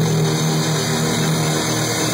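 Electric bass guitar holding a long low note, then moving to a different note near the end.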